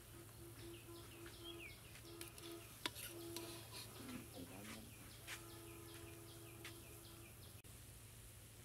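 Small birds chirping with repeated short, falling calls, over the faint sizzle of fritters frying in oil. A few sharp clicks of the slotted steel spoon on the metal, the loudest about three seconds in, and a faint steady hum that stops and starts.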